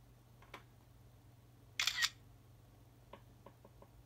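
iPhone camera shutter sound: one short double click about two seconds in, as a document page is photographed for scanning. A few faint ticks follow near the end.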